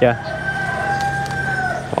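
A rooster crowing once: one long, steady call that drops slightly in pitch just before it ends.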